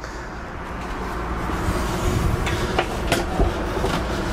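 A steady low rumbling noise swells over the first second and a half and then holds. A few light knocks come about two to three seconds in as the caravan's dinette table is handled.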